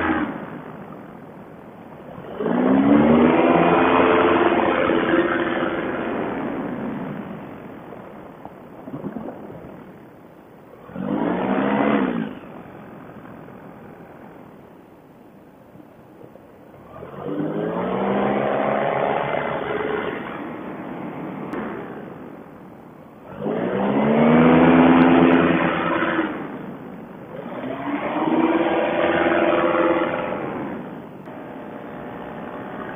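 Fly Products Eclipse paramotor's two-stroke engine and propeller, throttled up and down in about five swells of a few seconds each, the pitch rising and falling with each. Between the swells it runs quieter at low power.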